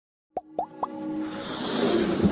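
Logo-intro sound effects: three quick pops, each gliding upward in pitch, about a quarter second apart, then a whoosh that swells steadily louder.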